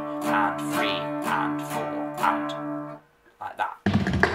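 Steel-string acoustic guitar in drop D tuning strummed in a steady, even, straight eighth-note reel pattern, the chord ringing with each stroke. The strumming stops about three seconds in, and a short low thump follows just before the end.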